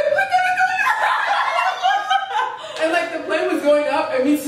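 A group of young women laughing and chuckling together, several voices overlapping.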